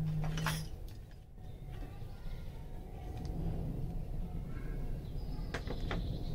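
Metal hand tools clinking in a tool case as one is picked out, with a sharp click near the end, over a low steady rumble.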